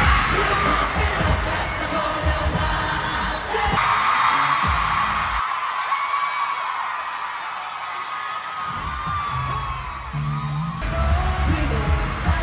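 Live K-pop concert in an arena: pop music with singing through the PA and a screaming crowd. About a third of the way in, the song drops out and the fans keep screaming and whooping over a quieter stretch. Then a new beat starts and is back at full volume near the end.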